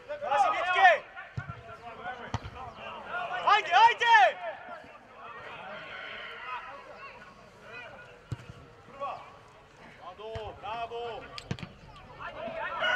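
Football players and spectators shouting across an outdoor pitch, two loud calls standing out near the start and about four seconds in, with fainter voices between. A few sharp thuds of the ball being kicked break through.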